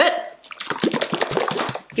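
Thick smoothie sloshing inside a capped portable blender bottle as it is tipped and shaken, a quick irregular run of wet slaps and gurgles.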